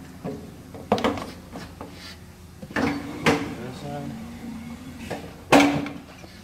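Clunks and knocks of a tyre and steel wheel being handled and turned around against a tyre changer's bead breaker, about five separate knocks with the loudest near the end, over a steady low hum.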